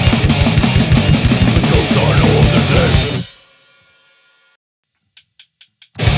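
Grindcore band, with electric bass, electric guitar and drum kit, playing a fast, heavy riff that cuts off together about halfway through, the strings ringing out briefly into silence. After a short pause come four quick clicks, a count-in, and the band comes crashing back in at the very end.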